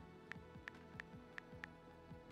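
iPad on-screen keyboard clicks, five quick taps a third of a second or so apart as a word is typed, over faint background music.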